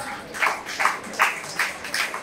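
Hand clapping in a steady rhythm, about two and a half claps a second, in a pause in a talk.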